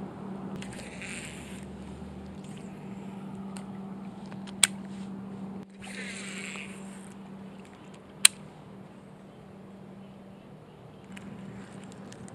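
Baitcasting reel being cranked in two short spells of rustling winding during a slow worm retrieve, with two sharp clicks, the loudest sounds, about four and a half and eight seconds in. A steady low hum runs underneath.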